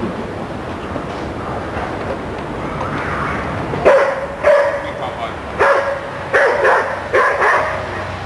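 A dog barking: a run of about seven short, sharp barks starting about four seconds in, the first one the loudest.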